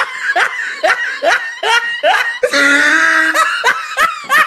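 A person laughing loudly in a run of short, rising bursts, about three a second, broken by one drawn-out high cry about two and a half seconds in, then a couple more laughs near the end.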